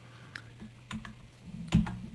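A few scattered computer keyboard clicks on a video-call line, over a faint steady hum, with a louder knock near the end.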